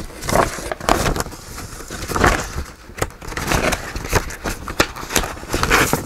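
Paper and a clear plastic storage container being handled: irregular rustling and crinkling with scattered small clicks and knocks.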